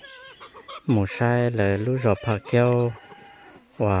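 A man talking, with brief high bird calls behind him near the start and again about three seconds in.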